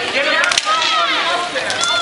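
Two sharp cracks of stick-and-puck play on a roller hockey rink about half a second in, with fainter clicks near the end, over a crowd of overlapping voices.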